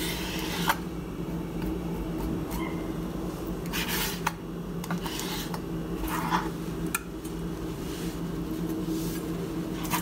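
Chef's knife cutting through a branzino fillet and scraping on a plastic cutting board: a few short strokes, at the start, about four seconds in and about six seconds in, with some light knocks, over a steady low hum.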